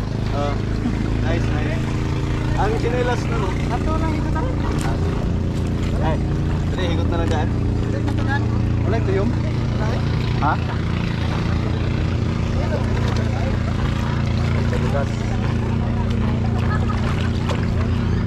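Steady, unbroken drone of a boat engine running close by, with background chatter of people's voices over it.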